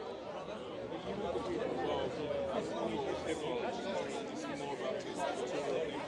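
Faint speech from a man away from the microphone, with chatter of people around.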